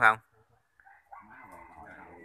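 A rooster crowing faintly, starting about halfway through after a brief lull.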